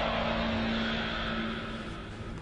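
A dramatic whooshing music sting that fades away, with one low note held through most of it.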